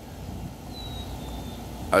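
Steady low rumble of outdoor background noise, with a faint thin whistle that sounds for about a second, slightly falling in pitch.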